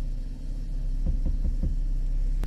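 A 2013 Chevrolet Camaro's engine idling steadily, a low hum inside the car, with four soft low pulses a little after a second in.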